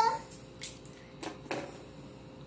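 A raw egg being cracked over a plastic mixing bowl: three light, sharp cracks and taps as the shell breaks and is pulled apart.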